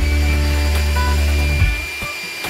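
Small electric motor whining at a steady high pitch after spinning up, with a low steady hum beneath that drops away near the end, over background music.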